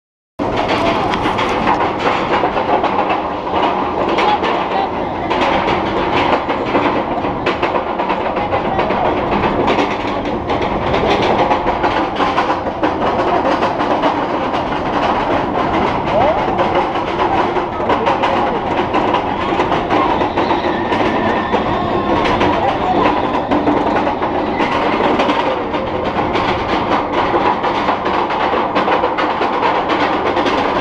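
Bolliger & Mabillard floorless roller coaster train climbing its chain lift hill: a steady clanking rattle of chain and train with quick clicks, starting suddenly about half a second in.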